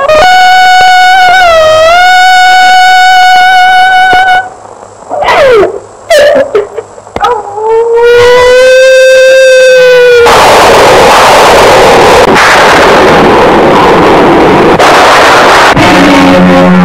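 Dramatic film background music: a long held high note that dips once, a quieter stretch of gliding tones, then a second long held lower note. From about ten seconds in a loud, rushing noise with no clear pitch takes over.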